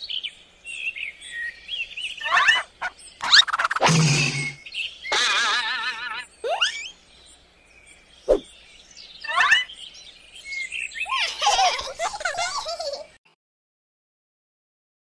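Chirping, whistling birdsong in short bursts with gaps, the calls quickly gliding and warbling in pitch, with a single sharp click about eight seconds in. The sound stops about thirteen seconds in.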